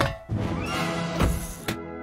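Cartoon sound effects over music: a quick swish at the start, a short squeaky animal-like cartoon cry with a rising glide, and a sharp hit about 1.7 s in, after which a held music chord rings on.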